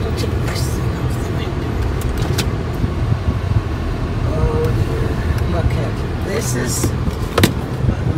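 Steady low road and engine rumble heard inside the cabin of a car driving slowly along a street, with a few sharp clicks, the loudest about seven and a half seconds in.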